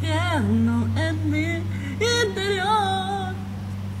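A person singing a short wavering melody, with a steady low hum underneath.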